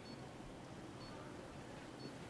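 Very quiet hospital room tone: a faint hiss with a short, faint, high electronic beep about once a second, typical of a bedside patient monitor.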